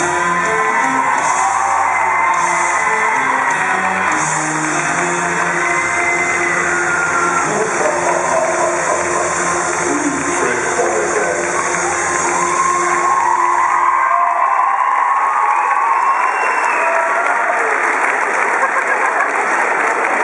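Recorded dance music playing over a cheering crowd of children. The music cuts off about two-thirds of the way through, leaving the crowd cheering and clapping.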